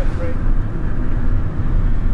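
Steady low rumble of a car in motion, heard from inside the cabin, with a brief bit of voice just after the start.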